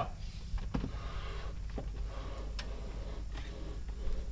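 Faint scuffing of a long-handled mop head being pulled along the top of an RV slide, under the slide topper, with a few light knocks, over a low steady rumble.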